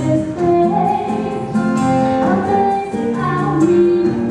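A woman singing held, gliding notes with a steadily strummed acoustic guitar accompanying her.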